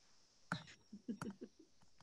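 Faint chuckling and a few quiet, whispered voice sounds over a video-call connection, in short bursts starting about half a second in.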